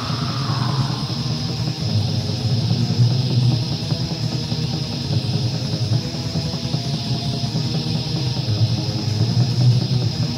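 Raw black metal from a lo-fi demo recording: distorted guitars playing continuously at a steady loudness, with a constant high hiss over the top.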